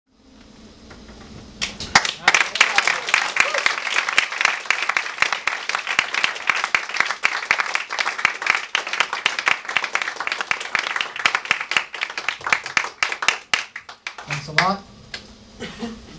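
Audience applauding in a small club, starting about two seconds in and dying away near the end.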